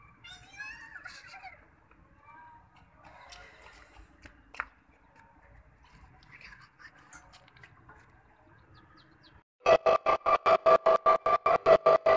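Faint background ambience with a few brief chirps and a sharp click, then, two to three seconds before the end, a loud pulsing tone starts suddenly, about five pulses a second: an edited-in outro sound effect for a subscribe card.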